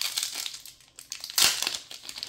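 Foil wrapper of a Magic: The Gathering collector booster pack crinkling and crackling as it is torn open by hand, loudest about one and a half seconds in.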